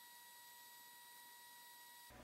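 Near silence, with a faint steady high-pitched tone and a second, fainter one an octave above it.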